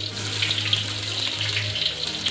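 Hot oil sizzling and crackling in a wok as chopped garlic and shallot fry in it, with a low hum underneath that stops shortly before the end.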